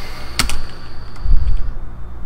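A single sharp computer-keyboard keystroke click, then a fainter click and a low dull thump about a second and a half in. A faint steady high whine sits underneath.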